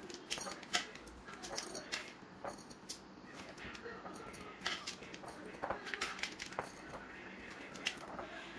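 Handfuls of crunchy baked granola (oats, nuts and dried fruit) dropped into a glass jar: scattered light clicks and rustles of the clusters hitting the glass and each other, with fingers gathering pieces off the baking tray.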